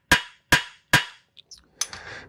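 Hammer peening on a corroded bolt seized in a Honda outboard motor, to shock it loose: three sharp metal-on-metal strikes about 0.4 s apart, each ringing briefly, then a few light ticks and a weaker hit near the end.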